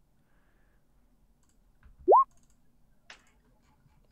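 A single short electronic blip rising quickly in pitch about two seconds in, a computer notification sound as the dice roll is submitted on the virtual tabletop, with a faint mouse click about a second later.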